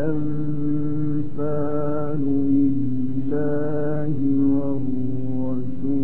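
A man's voice chanting Qur'anic recitation in the melodic mujawwad style, holding long notes of about a second each with ornamented turns in pitch between them.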